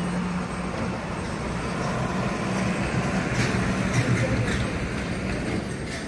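Street traffic noise: a vehicle engine's steady low hum under road noise, swelling a little about midway.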